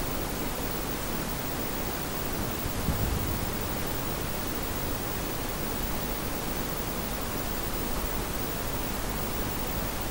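A steady, even hiss with no voices standing out, with a slight swell just before three seconds in.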